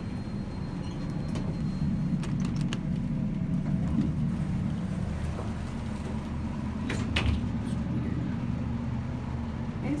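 Steady low background hum with faint, indistinct voices, broken by two sharp clicks close together about seven seconds in.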